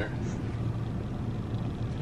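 Steady low rumble and hum inside a car cabin.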